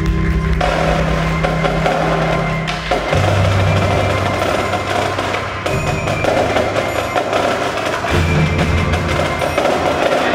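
Indoor percussion ensemble playing: marimbas and drums in a dense, busy texture over sustained low bass notes that change pitch every two to three seconds.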